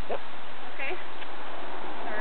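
Steady hiss of roadside background noise, with a few short, faint voice sounds.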